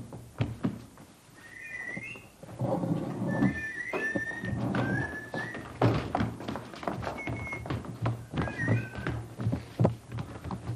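Short whistled notes, several gliding upward, over a run of heavy thuds of feet stamping and running on a wooden stage, with a steady low hum beneath.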